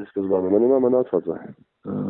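Speech only: a person talking in a recorded telephone call, the voice narrow and muffled as it comes over the phone line.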